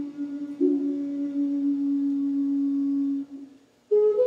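Solo flute playing a slow melody: a phrase stepping down onto a long held low note that fades out a little after three seconds in, followed by a brief pause before the next, higher phrase begins at the very end.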